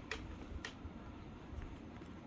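Faint handling noise of a Nikon D3S camera body being turned in the hands, with two light clicks, one right at the start and one about two-thirds of a second in, as fingers work at the small clock-battery compartment cover.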